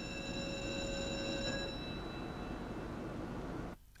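Ship's electric alarm bell ringing, its metallic tones dying away one after another over about three seconds, over a steady machinery rumble that cuts off just before the end.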